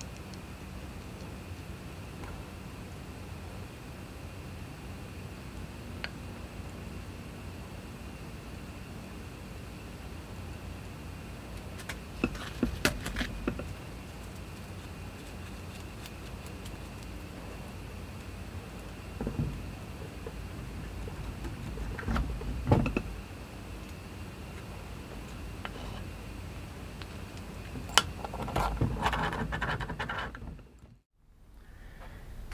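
Steady low hum of workshop room tone, broken by a few short clusters of clicks and taps as tools and small drill parts are handled on a wooden workbench, around the middle and again near the end.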